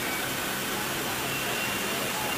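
Vehicles idling close by: a steady low engine hum under an even outdoor hiss.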